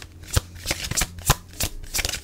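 Tarot cards being handled and shuffled: a run of sharp clicks and snaps, about three a second.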